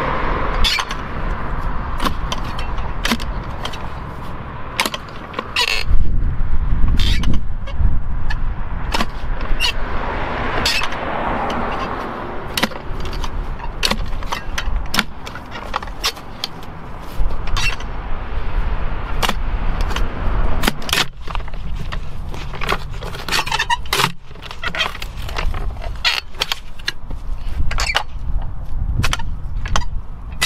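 Clamshell post hole digger being driven into the soil of a fence post hole, making many sharp, irregular chunks and scrapes of steel blades in dirt as the earth is loosened and lifted out. A low rumble runs underneath and swells about six seconds in.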